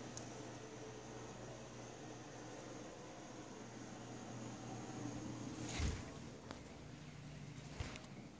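Handling noise from a phone carried while walking: faint rustling over a steady low hum, a few small clicks, and one louder thump a little before six seconds in.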